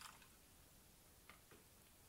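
Near silence, with two faint ticks about a second and a half in.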